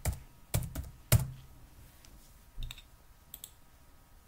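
Typing on a computer keyboard: a quick run of sharp keystrokes in the first second or so, the loudest just past a second in, then a few fainter taps later on.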